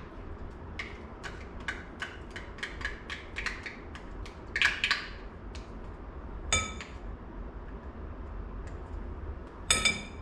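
Metal spoon scraping tomato paste out of a small tin, with a quick run of light taps, a short scrape about halfway, and two sharp ringing clinks of metal on metal, one about six and a half seconds in and one at the very end.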